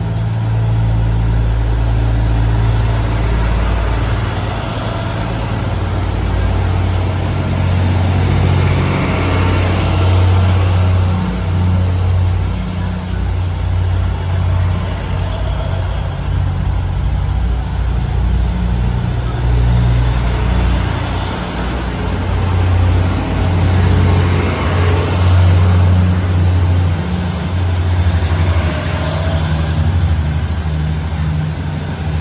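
Taiwan Railways DR3100 diesel multiple unit pulling out of the platform: its underfloor diesel engines run with a loud low drone, under the steady rumble and rush of the cars rolling over the rails.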